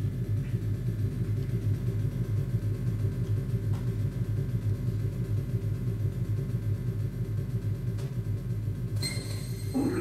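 Steady, low rumble of a vehicle driving along a road, from a documentary soundtrack played through a lecture hall's speakers.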